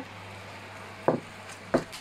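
Two short knocks of a glass baking dish against a wooden board, one about a second in and one near the end, over a low steady hum.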